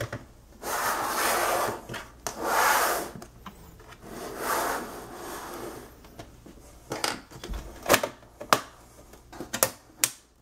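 Plastic bottom case of a laptop being worked loose: three short stretches of scraping and rubbing of plastic, then about five sharp clicks in the second half as its snap-fit clips pop free.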